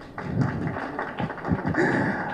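A pause in amplified speech: faint, scattered voices and chatter in the hall, with a few soft knocks.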